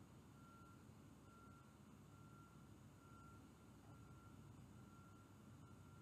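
Near silence with a faint electronic beep repeating evenly, about one short beep a second.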